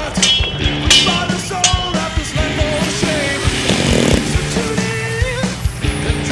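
Rock music with a steady drum beat and a melodic line over it.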